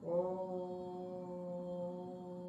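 A meditation 'frequency' track: a low, chant-like drone starts suddenly and holds at one steady pitch, rich in overtones.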